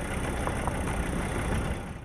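Vehicle driving slowly over a rough, dry dirt track: a steady mix of engine, tyre and wind noise with a couple of faint clicks. It cuts off just before the end.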